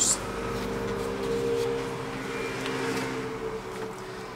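Automatic transmission solenoid wired to a car battery, giving a steady hum that weakens near the end. A solenoid that sounds when powered is working; a broken one stays silent.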